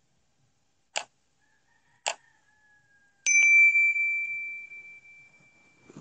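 Subscribe-animation sound effects: two sharp mouse clicks about a second apart, then a bell ding that rings on a steady tone and fades away over the last few seconds.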